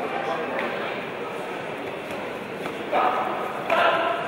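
Steady murmur of voices in a large hall, with a voice calling out twice, briefly, near the end.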